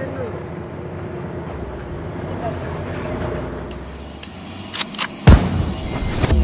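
A bus's diesel engine pulling under load up a steep, rutted dirt incline, a steady drone with a low rumble, with voices of onlookers over it. From a little before five seconds in, several loud sharp hits cut in.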